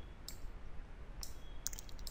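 A few faint clicks of a computer mouse, with a quick cluster of them near the end.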